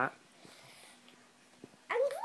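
Mostly a quiet room, then near the end a young boy starts a wordless, animal-like vocal noise with a wavering, rising pitch: his Godzilla impression.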